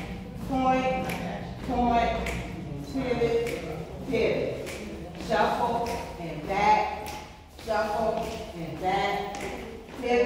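A voice talking, not made out as words, over dancers' shoes tapping and shuffling on a hard floor.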